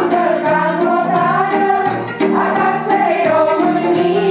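Music: a group of voices singing a song together over instrumental accompaniment.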